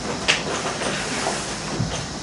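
Steady hiss and room noise from an amplified microphone during a pause in speech, with one short click about a third of a second in.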